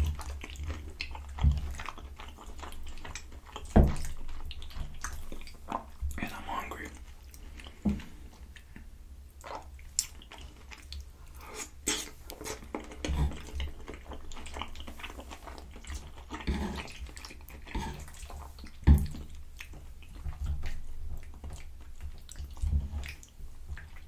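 Close-miked chewing of creamy penne pasta with shrimp and broccoli: wet, squishy mouth sounds with sharp smacks and clicks at irregular intervals every few seconds.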